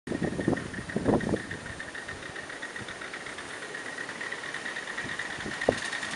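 Live-steam miniature model of an LNER A4 Pacific locomotive hissing steadily under steam, with a few louder chuffs in the first second and a half and a sharp click near the end.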